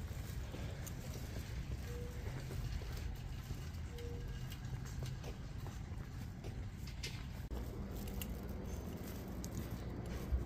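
Footsteps on a concrete walkway, a light pattering of steps over a steady low background rumble.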